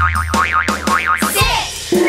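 Cartoon sound effects over children's-song backing music: a wobbling boing-like tone rises and falls several times over a low bass note and a steady beat, then a short springy boing near the end.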